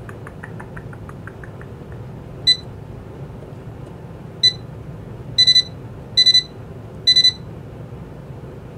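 Janome MC9000 sewing machine's control panel beeping as its tension setting is worked: a few faint clicks, two single beeps, then three quick triple-beeps. The triple-beeps are the machine refusing a manual override of the tension.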